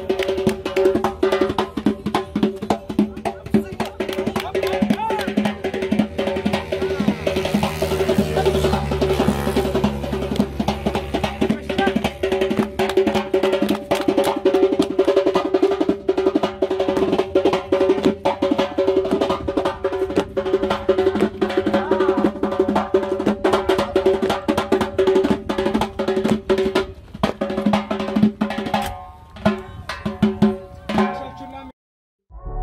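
Hand-played frame drum beating fast, with dense strokes and rolls, over steady held tones of accompanying music. A low rumble swells up in the middle.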